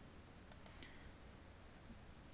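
Near silence: room tone, with a few faint clicks about half a second to a second in.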